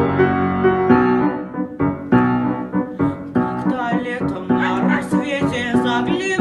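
Piano playing a slow introduction of held chords and single notes. About four and a half seconds in, a young singer's voice enters over it with a light vibrato.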